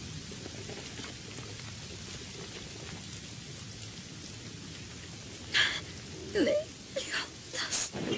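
Steady hiss of heavy rain. In the last two and a half seconds several short, sharp sounds cut in over it, one of them falling in pitch.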